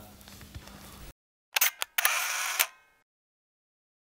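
Camera shutter sound effect: a few sharp clicks, then a short whirring burst of about two-thirds of a second that dies away, after a second of faint room tone.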